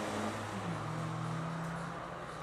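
A race car's engine running steadily some way off as the car drives away along the track. The pitch drops slightly about half a second in.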